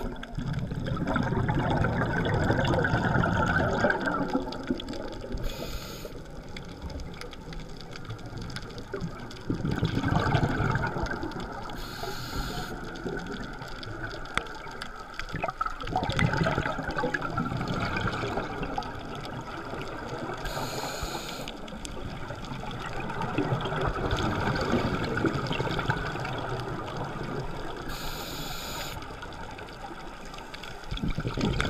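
Scuba regulator breathing heard underwater: a short hiss of inhalation every six to nine seconds, each followed by a long, rumbling burble of exhaled bubbles.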